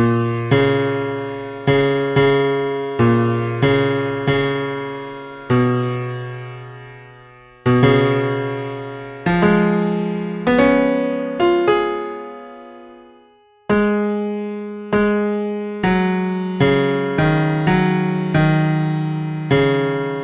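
Digital piano playing a slow hymn melody over chords in G-flat major, the notes and chords struck every half second to two seconds and left to ring and die away. About thirteen seconds in, a held chord fades almost out before the playing picks up again.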